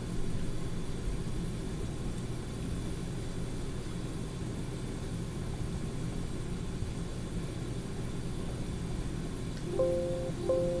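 Steady low background hum and rumble of room and equipment noise. A few held notes of background music come in near the end.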